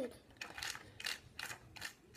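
Rhythmic scraping of a small plastic utensil against a plastic tray, about three short strokes a second, as powder and water are stirred together in a DIY candy kit.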